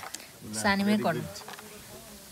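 A woman's voice making one short sound of about half a second, about half a second in, falling slightly in pitch. Quiet room noise surrounds it.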